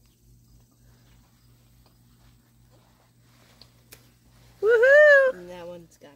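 After several seconds of quiet, a single loud, drawn-out vocal cry sounds near the end. It rises and falls in pitch, then drops to a lower held tone.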